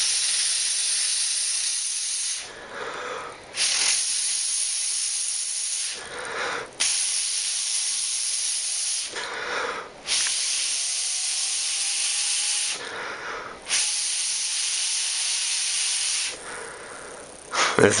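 Breath blown hard through a plastic drinking straw against the edge of a hanging stack of Zen Magnets to spin it: a steady hiss in five long blows of two to three seconds each, with short pauses between them for breath.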